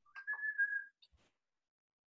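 A single short whistled note, held steady at a high pitch for under a second.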